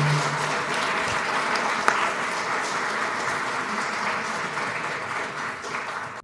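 Audience applauding steadily, with one sharper, louder clap about two seconds in.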